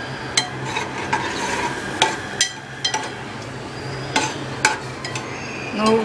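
A steel spoon stirring coconut milk into cooked pineapple in a metal pot. It clinks and scrapes against the pot in irregular clicks.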